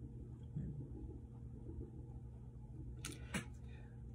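Low steady room hum, with two sharp clicks about a third of a second apart near the end.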